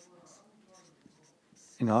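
Whiteboard marker writing on a whiteboard: faint scratching and rubbing strokes as short characters are written and a line is drawn. A man's voice starts just before the end.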